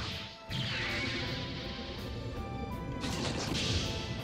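Anime battle sound effects, crashing impacts and rumbling, over music with long held notes. A louder rush of noise comes near the end.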